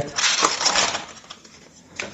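Crinkling and rustling of a foil-wrapped emergency ration bar being pulled out of its cardboard box, a burst in the first second that dies away.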